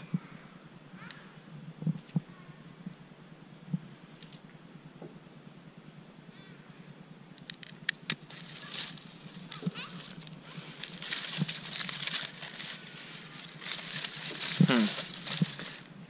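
A few faint clicks, then from about eight seconds in an irregular crackle and rustle of dry corn stalks and leaves as small flames, started with tiki-torch fuel, catch along them, with one sharp loud crackle near the end.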